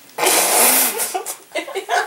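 A sudden loud sputter of breath blown out through the lips, like spitting out makeup that got into the mouth, followed by laughter.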